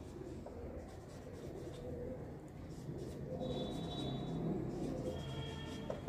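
Marker pen writing on a whiteboard: faint scratching strokes, with thin, high squeaks of the tip about three seconds in and again near the end.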